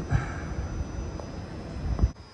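Low rumbling background noise with microphone handling, ending in a short, loud thump as the hand-held phone is moved.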